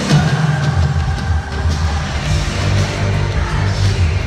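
Loud live band music played over an arena sound system, heavy in the bass, with a loud hit right at the start. It is recorded on a phone from the stands.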